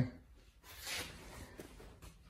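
Mostly quiet workshop room tone, with one soft, brief noise about a second in.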